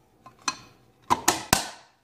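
Handling sounds from a Yaesu HRI-200's closed aluminium case on a countertop: a few light clicks, then a quick run of sharper knocks, the sharpest about one and a half seconds in.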